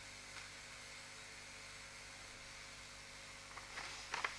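Faint steady hum and hiss of room tone in a pause between spoken remarks, with a few very faint small sounds near the end.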